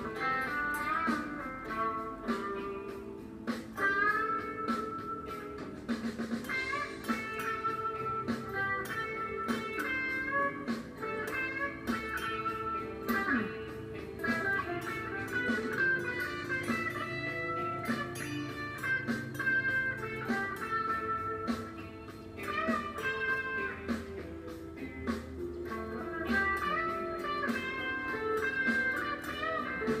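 Electric guitar played continuously: single-note lead lines with notes bent up and down in pitch.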